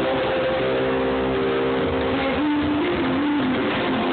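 A live rock band playing through the venue's sound system, heard through a phone microphone that cuts off the highs. Held notes run throughout and change pitch a couple of times after about two seconds.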